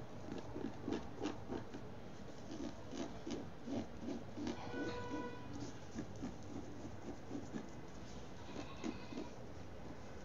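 Fingernails scraping at a DTF heat-transfer print on T-shirt fabric, its glue softened with retarder, in quick repeated strokes about three a second. A brief steady tone sounds about halfway through.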